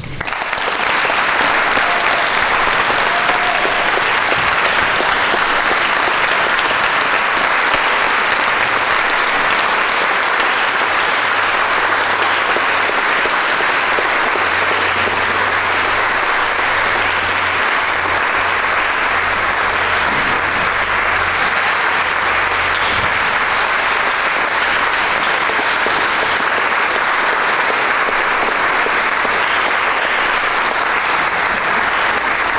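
Loud, sustained applause from a large standing audience, rising at once to full strength and holding steady without a break.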